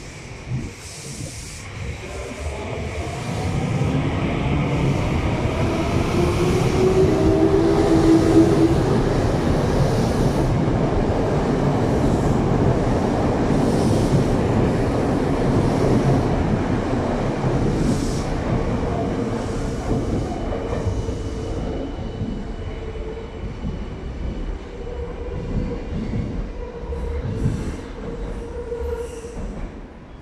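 Tokyo Metro 7000 series subway train departing: its motors whine, rising in pitch as it speeds up over the rumble and clatter of its wheels, loudest about eight seconds in and then slowly fading as it pulls away down the tunnel. A thin steady squeal lingers near the end.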